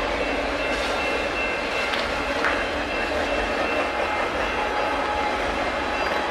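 Union Pacific double-stack container train rolling past, a steady, even noise of the stack cars passing on the rails.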